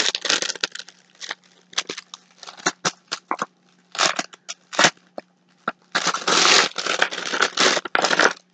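Clear plastic bag crinkling and rustling in irregular bursts as a drink pouch is unwrapped from it, with a longer spell of crinkling about six seconds in. A faint steady low hum runs underneath.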